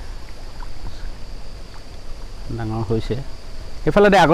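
Outdoor ambience with a steady, high-pitched insect drone over a faint low rumble. A man's voice speaks briefly about two and a half seconds in and again right at the end.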